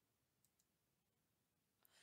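Near silence, with two very faint computer mouse clicks: one about half a second in and one near the end.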